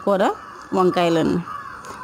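A woman's voice speaking in two short bursts, with a brief pause between them.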